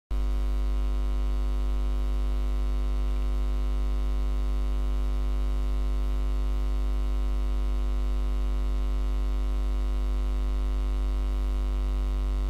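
A steady, unchanging low electrical hum with a buzzy stack of overtones, starting abruptly at the very beginning.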